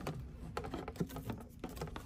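Irregular light clicks and knocks of rigid PVC pipe and fittings being handled against a plastic bucket lid, with a sharper knock about a second in.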